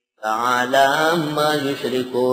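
A man chanting a Quranic verse in Arabic in the melodic recitation style (tilawat), with long held notes that bend up and down; it begins a moment after a short pause.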